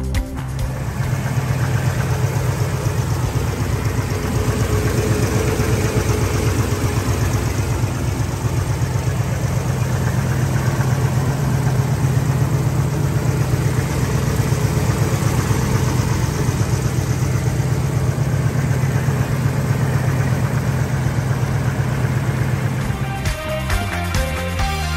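1955 Pontiac Star Chief's 287 V8 engine idling steadily, a low even rumble. It starts about half a second in and cuts off just before the end.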